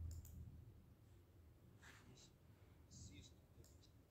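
Near silence broken by a few faint, short clicks scattered through it: one near the start, a couple around the middle and a small cluster near the end.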